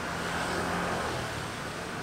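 Steady street traffic noise from passing vehicles, with a motor scooter going by.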